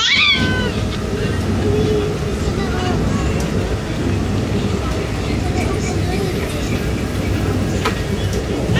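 Steady rumble of a passenger train carriage in motion. Right at the start comes a short high cry that falls in pitch.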